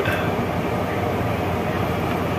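Steady hum and rush of a car's engine running, heard inside the cabin.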